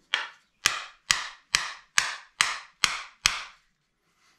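Wooden mallet tapping the butt of a turned wooden awl handle, eight sharp knocks at about two a second, each with a short ring, the first one lighter.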